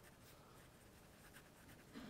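Faint scratching of a pen writing on paper.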